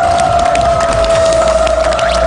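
Studio audience applause and hand clapping over a celebratory music cue that holds one long steady note.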